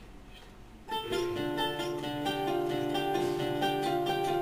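Acoustic duet of a nylon-string classical guitar and a mandolin-family instrument, plucked notes starting about a second in.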